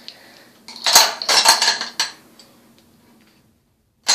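Makeup products and containers clattering and clinking together on a tabletop as they are rummaged through and set down: a burst of knocks about a second in, lasting roughly a second, then dying away.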